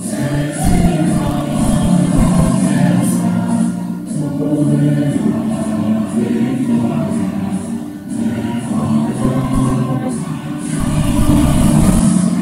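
Recorded choral music: a choir singing over instrumental accompaniment.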